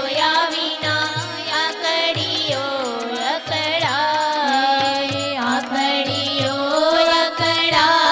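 Women singing a devotional bhajan together, accompanied by an electronic keyboard and tabla. The tabla's deep bass strokes keep a steady repeating rhythm beneath the melody.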